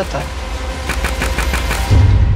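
Trailer sound design: a low rumbling drone under a rapid run of sharp ticks that crowd together, ending in a deep bass hit near the end.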